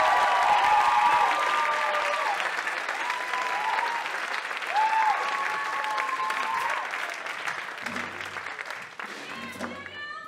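Audience applauding and cheering, with long whoops over the clapping; the applause thins out over the last few seconds.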